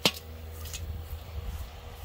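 A sharp metallic clink at the start and a fainter click a little under a second later, over a low steady hum. The clinks come as dirt is packed around the rim of a kettle grill lid sitting on a buried metal casing, sealing it off so the fire inside is starved of air.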